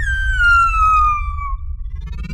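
Logo intro sound: one long howl-like tone that falls slowly in pitch and fades after about a second and a half, over a deep rumbling bass.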